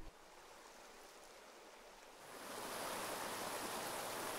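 Near silence for about two seconds, then the steady rushing of a shallow creek's flowing water fades in and holds.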